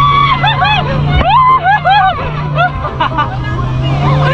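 Motorboat engine running steadily at speed, a constant low drone, with high voices rising and falling loudly over it.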